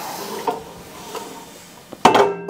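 Handling noise as a sheet-metal blower housing is lifted and set on a cart: a soft rustling hiss that fades, with a couple of faint knocks.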